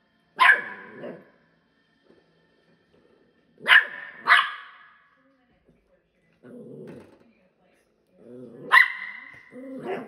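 Westie puppy barking in play: four sharp, high barks, one early, a quick pair midway and one near the end, with low growls between them in the second half.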